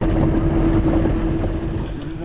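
Car engine and road noise heard from inside the cabin, a steady drone and rumble.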